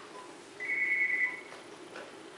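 A phone's electronic ring tone: one high, steady beep lasting under a second, coming about halfway in.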